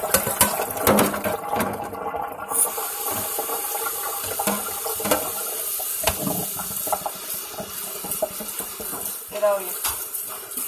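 Kitchen tap running into a stainless steel sink, with a metal pot clattering against the faucet and sink in the first two seconds. The flow breaks off briefly, then runs steadily again from about two and a half seconds in as hands are rinsed under it.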